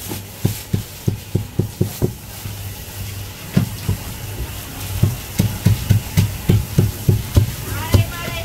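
A heavy Chinese cleaver chopping braised pork knuckle on a wooden chopping block. There is a run of sharp chops, a pause of about a second and a half, then a quicker run near the end at about four chops a second, over a low steady hum.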